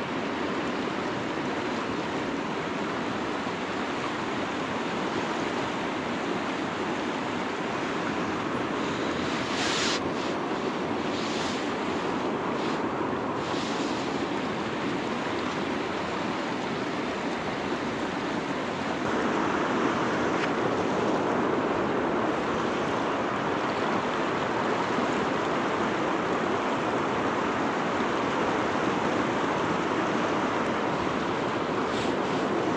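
Fast river current rushing over rocks in a steady whitewater rush, getting a little louder about two-thirds of the way through.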